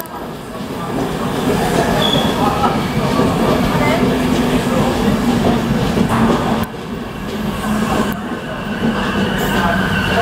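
An LNER train of Mark IV passenger coaches running past close to a station platform: a loud, steady rumble of wheels on the rails, with a brief dip in the noise about two-thirds of the way through.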